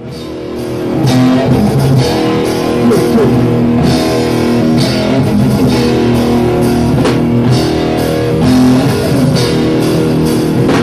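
Live rock band, loud electric guitars over a drum kit, starting a song: the sound swells up over the first second, then holds at full level.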